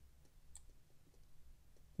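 Faint clicking from a Reservoir Tiefenmesser bronze watch's crown and setting works as the crown is turned by hand, with one sharper click about half a second in. The minute hand is being run past 60, tripping the retrograde minute hand's fly-back and the jump hour.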